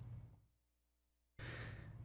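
A pause at a podium microphone: the sound cuts out completely about a third of a second in, then a man's soft breath comes in over faint room hum from about a second and a half in.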